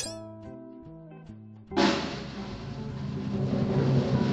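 Light cartoon music with a few held notes, then, a little under two seconds in, a drum roll starts suddenly and grows louder: a suspense roll leading up to a reveal.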